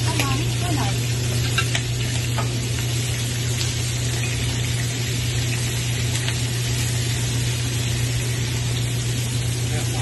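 Prawns, chopped bell peppers and onion sizzling steadily in hot oil in a frying pan as they are stirred, with a few light clicks of silicone tongs in the first couple of seconds. A steady low hum runs underneath.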